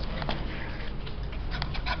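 Young puppy moving about on concrete close to the microphone: soft scuffs and a few short clicks, more of them near the end.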